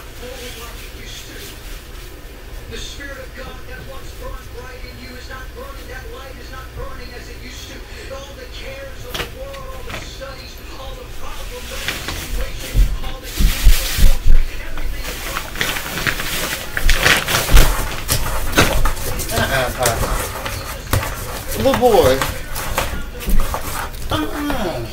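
Faint voices in the background, then from about halfway a series of heavy, low thuds and sharp knocks, loudest around the middle, which the uploader takes for the upstairs neighbours jumping, stomping and dropping things on the floor above.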